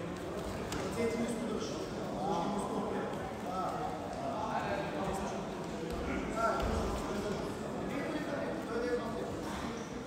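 Many voices talking at once in a large hall, a steady crowd murmur, with light slaps of bare feet stepping on a wrestling mat and a couple of dull thumps about six seconds in.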